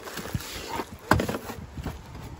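A cardboard box being handled and a plastic-wrapped console lid slid out of it, giving a few scrapes, knocks and crinkles, the loudest knock about a second in.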